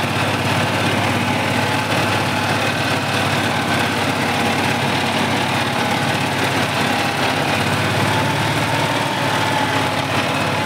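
Fortschritt RS09 tractor's diesel engine running steadily under way, heard from the driver's seat, its pitch rising slightly about eight seconds in.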